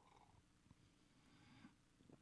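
Near silence: faint room tone with a soft sip from a mug, the faint hiss cutting off just before the end.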